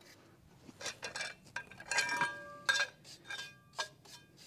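A small hearth brush and ash shovel scraping and clinking against the steel of a wood-burning stove as ash is swept out, with a few short ringing metal clinks about halfway through.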